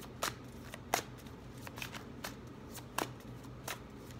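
A deck of cards being shuffled by hand: a soft rustle broken by about six sharp card snaps, irregularly spaced a little under a second apart.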